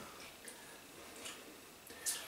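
A quiet room with three faint, short clicks spread unevenly through it.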